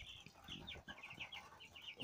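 Faint, high peeping of a pen of white broiler chickens: many short calls in quick succession.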